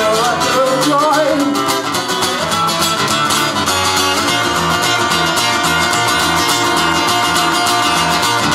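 Live band playing a song, with guitar to the fore over a steady beat; a sung line trails off in the first second, then the band plays on without vocals.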